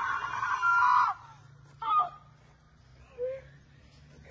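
A woman screaming: one long, loud, steady-pitched scream that breaks off about a second in, then a short cry about two seconds in.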